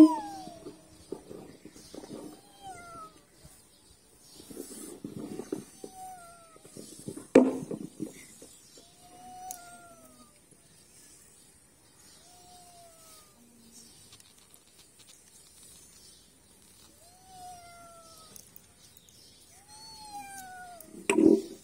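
Repeated meowing: about ten short cat-like cries spaced irregularly, most of them falling in pitch. A single sharp knock about seven seconds in is the loudest sound.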